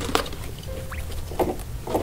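Guinea pigs shuffling about with light rustling and a few soft taps, and one brief thin squeak about a second in.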